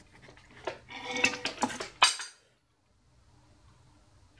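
Clattering and clinking of small hard parts being handled, with a sharp click about two seconds in. Then the sound cuts off abruptly, leaving only faint room tone.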